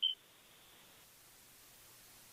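A single brief, high-pitched beep right at the start, then near silence.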